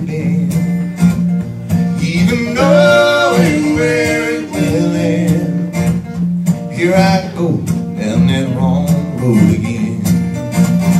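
A steadily strummed acoustic guitar playing a country-style tune, with a man's voice singing a few long held notes over it, around three and seven seconds in.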